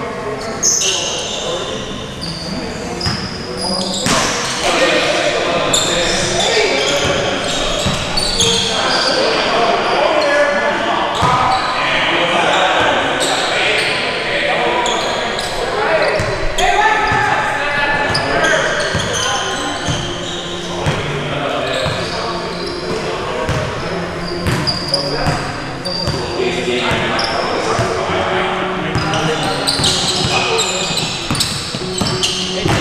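A basketball bouncing on a hardwood gym floor during play, with many short thuds, mixed with players' indistinct shouts and calls, all echoing in a large gym.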